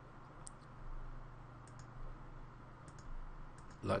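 A few faint computer mouse clicks, some in quick pairs like double-clicks, while a file is picked and added. A low steady hum lies under them.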